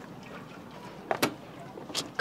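Quiet outdoor background hiss, broken by a brief sharp click a little over a second in and another just before the end.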